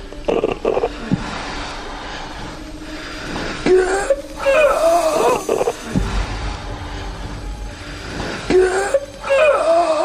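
A person moaning in long, wavering cries, twice: from about four seconds in for a couple of seconds, and again near the end. A steady low background hum runs underneath.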